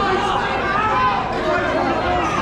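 Boxing crowd of spectators shouting and talking over one another.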